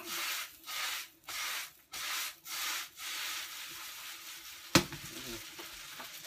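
A spatula scraping and stirring food in a sizzling pan, in rhythmic strokes about every half second, then a steadier sizzle. Near the end, a single sharp metal clank of the spatula against the pan is the loudest sound.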